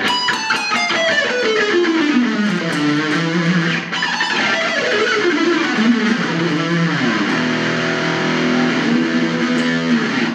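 Ernie Ball Music Man Silhouette electric guitar playing fast descending runs in A harmonic minor, three notes per string, repeated down through the octaves. There are two quick downward runs, then lower notes held over the last few seconds.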